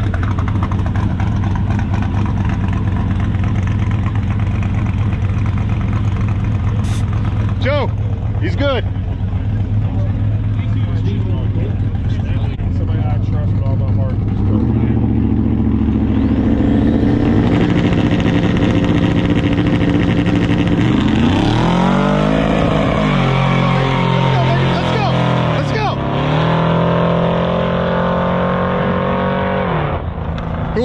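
Drag-racing engines on the starting line: an Audi quattro sedan and an old Ford pickup idle, their note changes about halfway through, then they launch. The engine pitch climbs, drops at a gearshift and climbs again as they accelerate away down the track.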